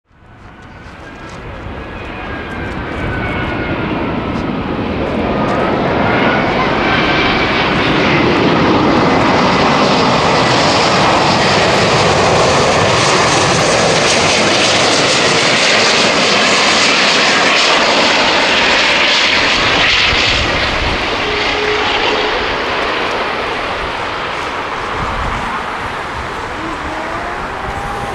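Airbus A380-841's four Rolls-Royce Trent 900 turbofans on final approach: a loud, steady jet rush that swells over the first several seconds as the airliner nears and eases slightly in the last few seconds. Thin whining tones glide up and down in pitch during the first eight seconds or so.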